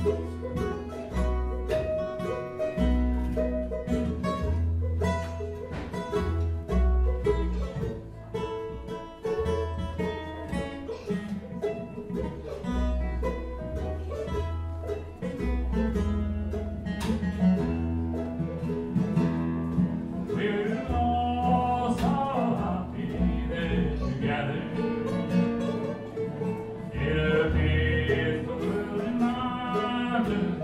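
Live country band playing: strummed acoustic guitar, electric guitar and plucked upright bass, with a steady repeating bass line under a plucked-string melody.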